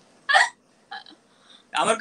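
A single short vocal burst, heard once near the start of a lull in the conversation, followed by a faint murmur. Speech picks up again near the end.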